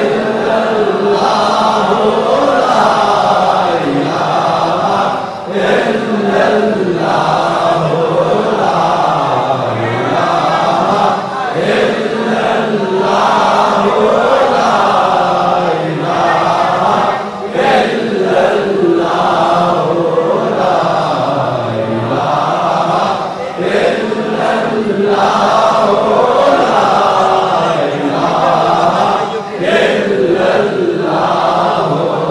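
Men's voices chanting a devotional refrain together, continuous and loud, the sung melody wavering up and down.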